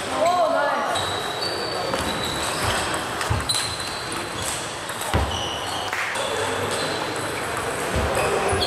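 Table tennis ball being struck and bouncing during a rally: a few sharp, irregularly spaced clicks of the ball off bats and table, over a steady murmur of voices in a large hall.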